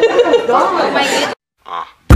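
People chattering and laughing, cut off abruptly just over a second in, followed by a brief silence.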